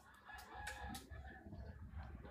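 A faint, distant animal call held for about a second early on, over low background rumble.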